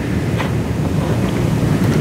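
Steady background noise of the meeting-room recording, a hiss with a low rumble, with one faint click about half a second in.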